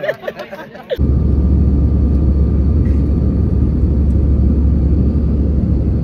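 Airliner cabin noise in flight: a loud, steady low rumble of engines and airflow, with a faint steady whine above it, starting abruptly about a second in.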